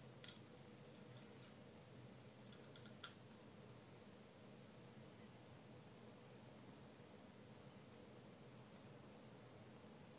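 Near silence with a few faint metallic clicks in the first three seconds, the sharpest about three seconds in: a small hex key working the blade-retention set screw on a metal lightsaber hilt.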